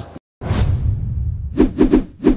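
A whoosh sound effect swelling about half a second in over a low rumble, followed near the end by a quick run of sharp percussive hits: the opening of a TV channel's logo sting.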